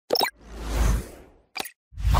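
Sound effects for an animated logo: a short pop, then a whoosh that swells and fades over about a second, a brief click, and a second whoosh starting near the end.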